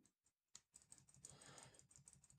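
Near silence with a few faint, scattered computer-keyboard key taps.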